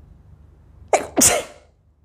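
A woman sneezing, brought on by black pepper: one sneeze in two quick bursts about a second in, the second louder and longer.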